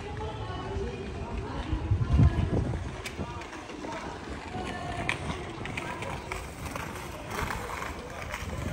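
City street ambience: passers-by chatting and footsteps of people walking by, with a brief low rumble about two seconds in.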